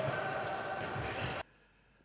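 Natural sound of an indoor handball game: the ball bouncing and players' footsteps echoing in a large sports hall. It cuts off abruptly about one and a half seconds in, leaving silence.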